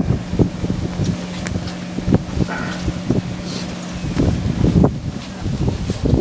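Tour boat's engine running with a steady low hum that drops away about four seconds in, under wind buffeting the microphone and scattered knocks.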